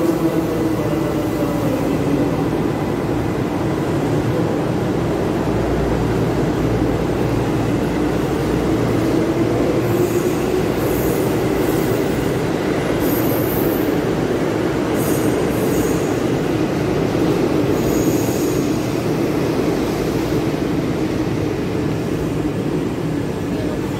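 Electric commuter train pulling out of the platform close by: a steady rumble of wheels on rails with a motor drone whose pitch slowly climbs as the train gathers speed. Several brief high wheel squeals come in the second half.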